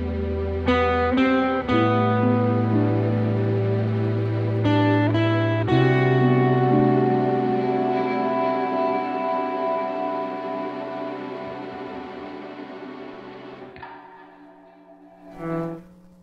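Acoustic guitar playing a melody over a backing track with low held bass notes. The last chord rings out and fades slowly over about eight seconds, with a brief sound near the end.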